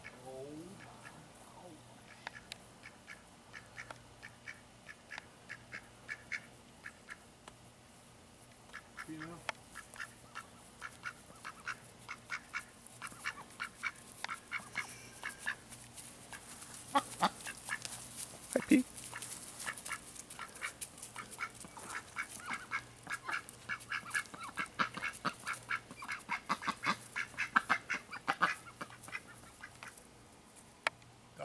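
Pekin ducks quacking softly and chattering in many short calls, quick runs of them that grow busier through the second half, with one louder call about two-thirds of the way in.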